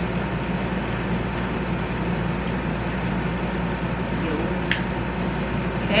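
Steady background hum and hiss, with one sharp click a little under five seconds in as a battery is fitted into the camera body.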